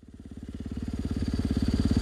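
Single-cylinder supermoto motorcycle engine with an FMF aftermarket exhaust idling with an even, steady beat, fading in from silence and growing louder.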